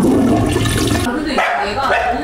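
Audio from an old television beer commercial: a man's voice exclaiming 'Ah, refreshing!' over a sudden rush of water-like noise that lasts about a second, followed by more voice.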